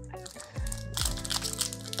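Foil wrapper of a Yu-Gi-Oh! booster pack crinkling as it is handled and gripped to be torn open, starting about a second in, over steady background music.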